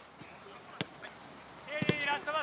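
A football being kicked, one sharp thump a little under a second in, then near the end a person's high, wavering call or shout.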